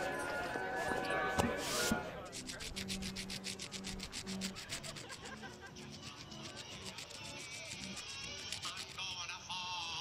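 Carnival music and chatter fade out in the first two seconds, ending with a brief rustle. Then comes a fast, even ticking or scraping, several strokes a second, over a few low held notes, until music returns near the end.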